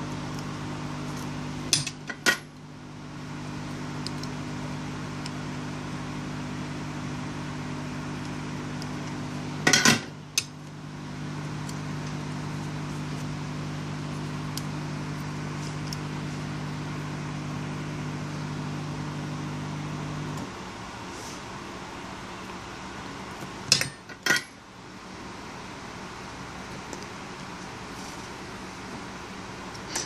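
A steady low electrical hum from bench equipment stops about two-thirds of the way through. Over it come three pairs of sharp metallic clicks from small metal hand tools such as tweezers handled at a phone-repair bench.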